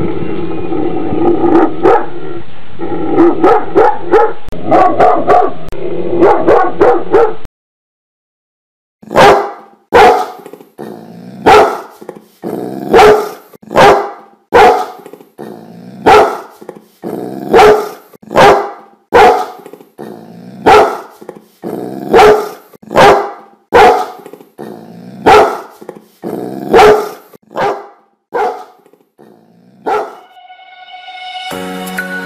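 Large dogs barking with deep barks, from two recordings. The first is a dull, hissy run of quick barks that stops suddenly. After a short silence comes a clean, steady series of single barks, about one every three quarters of a second.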